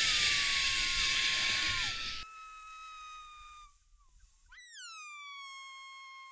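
A high whistle holding one slightly sagging note, under a rushing hiss for the first two seconds. The whistle fades out, then swoops up again about four and a half seconds in and holds before sliding down.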